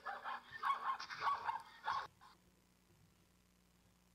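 Recorded zebra call played from a phone app through its speaker into a microphone: a run of yelping calls lasting about two seconds, then one short call just after.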